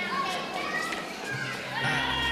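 Children playing and shouting, with overlapping background chatter from a party crowd.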